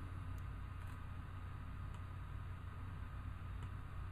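Quiet room tone: a low steady hum with faint background hiss, broken by a few faint clicks.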